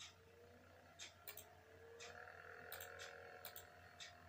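Faint ticking about once a second, like a clock, with a few quick pairs of clicks in between, over near silence.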